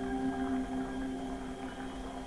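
Background music score: a few held notes hang on and slowly fade away.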